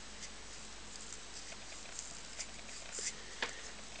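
Reed knife scraping the cane blade of a double reed for a Spanish soprano shawm: a few faint, light scratching strokes. It is thinning the stronger side of the blade so the reed closes evenly.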